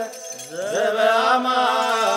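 Chanted hymn, voices holding long notes. The sound drops away briefly at the start, then a voice glides up into a held note about half a second in.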